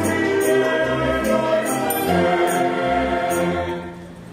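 Mixed choir singing a sustained folk-song phrase in harmony over a string orchestra, with light high percussion ticks on the beat; the phrase dies away near the end.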